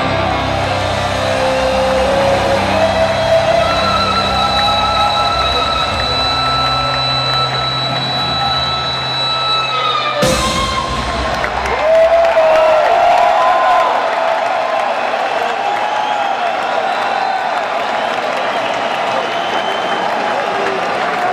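A live rock band holds the song's final chord on electric guitar, keyboards and bass, and it stops on a sudden last hit about halfway through. An arena crowd then cheers and whoops loudly.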